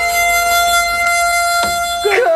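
Harmonica holding one long, steady note as background music.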